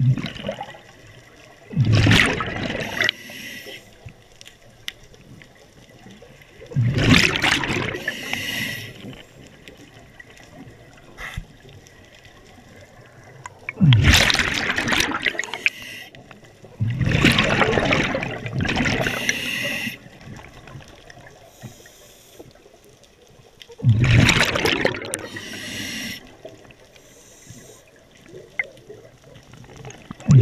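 Scuba diver breathing through a regulator underwater, in loud bursts every five or six seconds as the exhaled air bubbles out, with quieter hiss between breaths.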